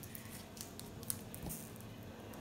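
Trading-card pack wrapper crinkling faintly as it is handled in the hands, with a small click about a second in.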